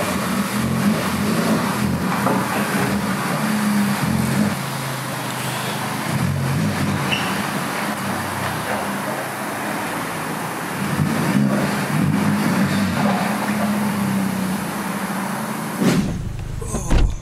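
Honda Civic Type R's turbocharged four-cylinder engine running at low revs as the car moves off, over a steady hiss. The hum is stronger in the first few seconds and again past the middle.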